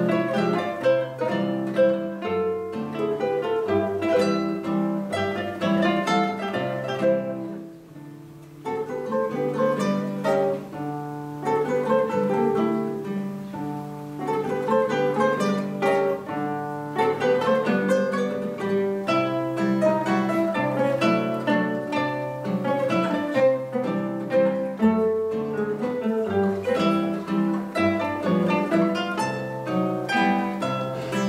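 Three classical guitars playing together as a trio, with plucked melody and chords over a moving bass line. The music thins to a quiet moment about eight seconds in, then picks up again.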